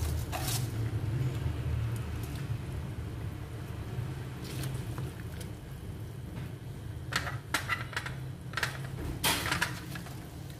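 A plastic slotted spoon knocking and scraping against a metal pot as cabbage is stirred into simmering soup: scattered clicks and scrapes, mostly in the second half, over a steady low hum.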